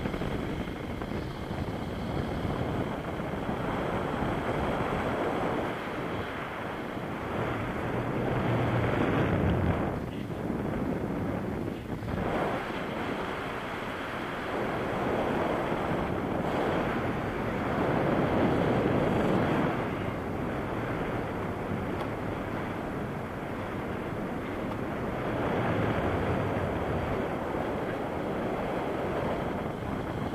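Airflow buffeting a camera microphone in paraglider flight: a steady rushing rumble and hiss that swells louder and eases off several times.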